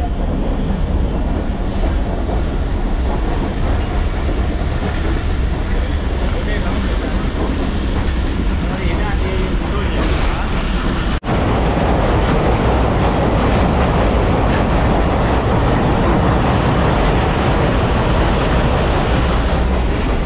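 Running noise of a moving passenger train heard from inside the coach: a steady, loud rumble and rattle of the carriage on the rails. It breaks off for an instant about halfway through and comes back a little louder.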